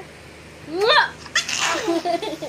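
A person sneezes: a rising drawn-in 'ah' a little under a second in, then a sudden breathy burst. A baby's laughter starts right at the end.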